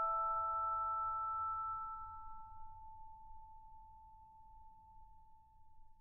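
A single bell-like chime note in background music rings out and dies away. Its higher tones fade within the first two or three seconds, and one clear tone lingers faintly to the end over a low hum that also fades.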